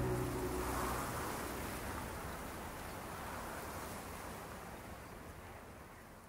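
The song's final low note fades out in the first second, leaving a faint, even wash of wind and surf that slowly fades away.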